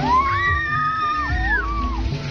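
A high, drawn-out yell from excited children, held for over a second and then dipping and rising again near the end, over background music with a low bass beat.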